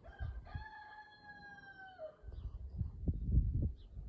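A rooster crowing once: a short opening note, then a long held call that drops in pitch at its end, about two seconds in all. A louder low rumbling noise follows in the second half.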